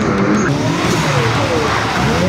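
Drift car's engine revving up and down as it slides sideways on a wet surface, with a steady hiss of tyres and spray that builds about half a second in.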